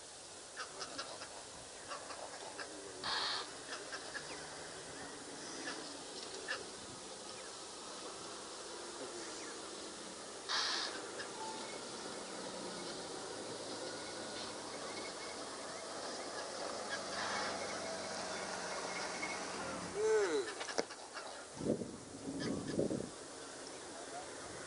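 Scattered bird and wild animal calls over a steady outdoor background. The loudest are near the end: a call that bends up and down, then a few short harsh calls.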